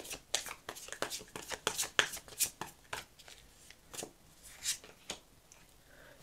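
A tarot deck (Light Seer's Tarot) being shuffled by hand: a quick run of soft, irregular card clicks and slides, sparser from about three seconds in.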